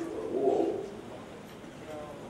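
A man's voice at a microphone making one low, drawn-out sound in the first second, then a pause in his speech with only background noise.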